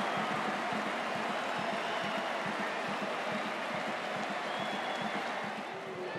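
Stadium crowd cheering and applauding after a goal, a steady noise of many voices and hands that slowly dies down.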